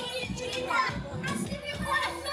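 A boy's voice amplified through a microphone, delivering a lively spoken performance with short, quickly changing phrases, music faintly underneath.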